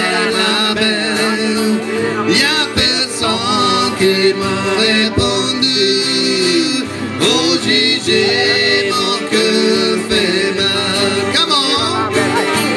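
Cajun band playing live: fiddle, single-row diatonic button accordion and strummed acoustic guitar, with a man singing over them.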